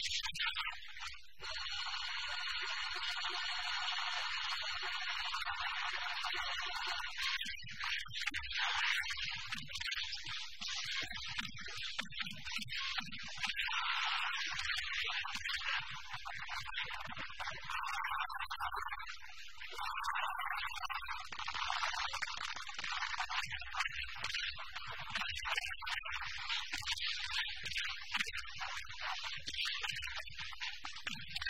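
Soundtrack of a film fight scene that sounds thin and hissy. A chord of steady tones is held for the first several seconds, then gives way to a dense run of noisy bursts and short low thuds of fight effects.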